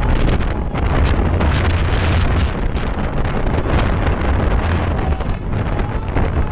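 Wind buffeting the microphone: a loud, steady low rumble, with a run of crackles in the middle.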